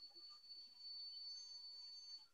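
Near silence: faint room tone with a thin, steady high-pitched tone.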